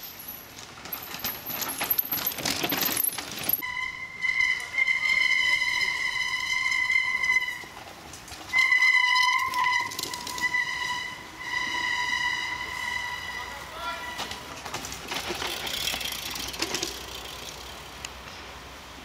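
Bicycles rattling over a rough dirt descent. Then a high, steady horn-like tone sounds in four long notes, the first about four seconds long, before a rush of passing noise near the end.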